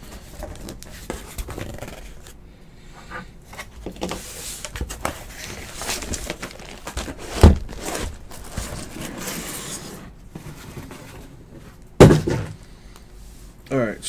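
Cardboard boxes from a case of trading-card boxes being handled, with scattered knocks and rustling. Two loud thumps come about halfway through and near the end.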